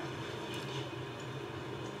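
Quiet steady hum and hiss, with no distinct sound standing out.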